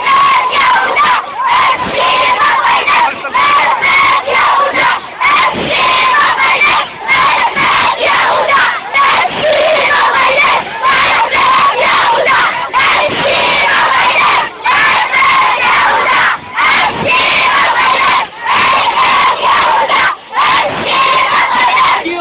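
A large crowd of children shouting and chanting together, loud and sustained, with short breaks between phrases.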